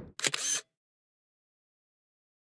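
Digital SLR camera shutter firing, a brief mechanical shutter click about a quarter second in, lasting under half a second.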